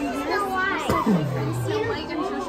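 A small girl's voice and adult voices talking, with chatter from a busy restaurant dining room behind them.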